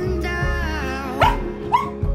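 A dog barking twice, two short barks about half a second apart, over background music.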